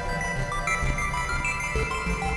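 Electronic synthesizer music with no vocals: a melody of held notes stepping from pitch to pitch over a low bass line.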